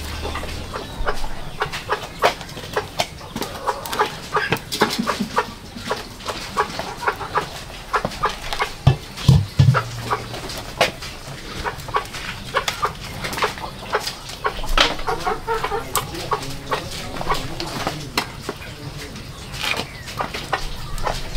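Chickens clucking, over many short, sharp crackles and ticks from a wood fire catching in a brick stove. About halfway through, a wok is set down on the stove with a knock.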